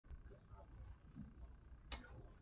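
Near silence: faint room tone with a low hum, and one short click just before the end.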